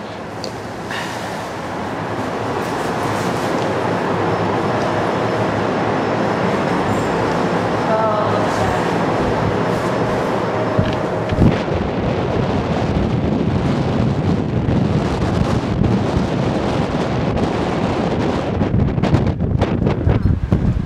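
Aerial cable car cabin in motion: a steady rumble and rush of wind noise that grows louder over the first few seconds as the cabin gets under way, then holds. A single knock about eleven seconds in.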